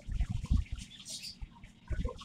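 Small birds chirping now and then, with a few low thumps in the first half second.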